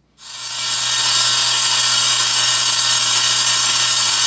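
Table saw switched on, its motor and blade spinning up over about a second and then running steadily at full speed with a constant hum, as a board is fed toward the blade for a rip cut.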